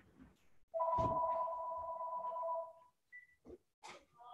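Telephone ringing: one ring of about two seconds made of two steady tones, followed a moment later by a short, higher beep.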